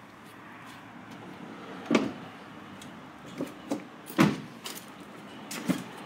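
A car's rear door being handled and shut: a run of knocks and thumps, the loudest thud about four seconds in.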